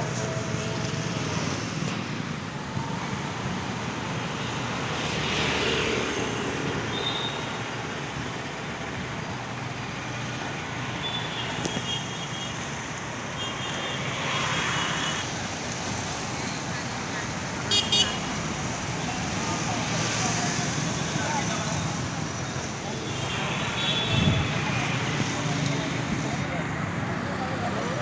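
Street traffic going by, with a few short horn toots and people talking in the background. A couple of sharp clicks come about two-thirds of the way through.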